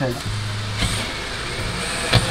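Cordless drill running steadily as it bores a hole through a wakesurf board, with a high whine joining in a little under a second in.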